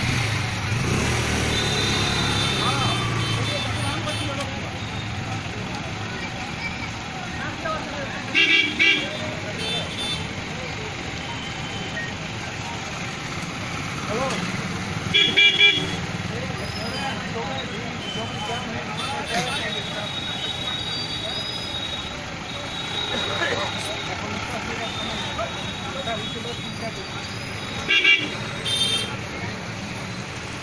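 Street traffic noise of idling and creeping motorbikes and cars, with crowd chatter. Vehicle horns honk in short blasts several times, loudest about a third of the way in, around the middle and near the end.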